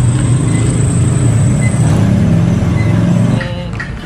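A road vehicle's engine running close by, a steady low rumble that falls away about three and a half seconds in as it moves off, with a thin high whine over the first two seconds.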